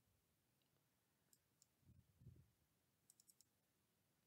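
Near silence with a few faint computer-mouse clicks: two single clicks, then a quick run of about four near the end. There are faint low bumps in between.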